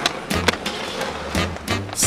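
Skateboard on asphalt: wheels rolling, with several sharp clacks of the board, the loudest about half a second in, over a song with a steady bass beat.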